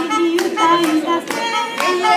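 Hands clapping in time, about two claps a second, over a woman singing and an instrument holding long notes.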